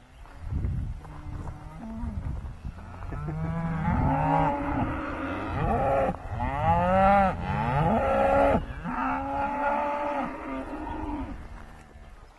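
Several cattle mooing, long calls overlapping one another, one loud call in the middle rising and falling in pitch.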